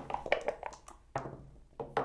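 Backgammon checkers being picked up and set down on the board, a series of light clicks and taps.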